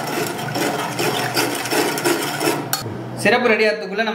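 Steel spoon stirring in a stainless steel saucepan of sugar syrup, metal scraping and clinking against the pot's side and bottom; it stops after about two and a half seconds.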